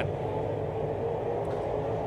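Dirt late model race cars' V8 engines running at speed around a dirt oval, heard as a steady, even drone.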